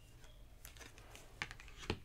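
Tarot cards being handled: a few faint, light clicks and taps as a card is drawn from the deck and laid down on the table, the sharpest two near the end.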